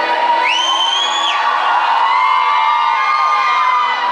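Concert crowd screaming and cheering, with one high shriek that rises and is held for about a second early on.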